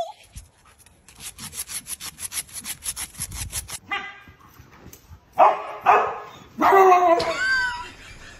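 A dog barking and yelping in two loud bouts in the second half, the later one with whining glides in pitch. It is preceded by a fast scratchy rhythm of about seven strokes a second that lasts nearly three seconds.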